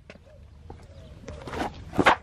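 Faint scattered knocks and rustling of footsteps on concrete and a carpet floor mat being handled, with a sharper knock right at the end.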